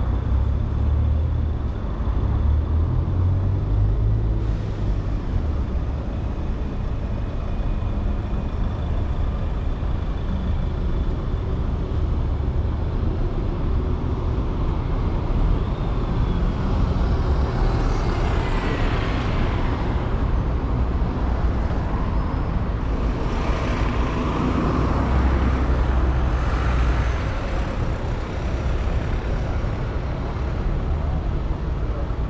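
Town-centre road traffic: a steady low engine rumble of cars and a double-decker bus, with vehicles passing close that swell and fade in the second half.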